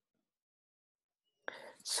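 Dead silence for about a second and a half, then a man's breathy intake and hiss running straight into the start of his speech near the end.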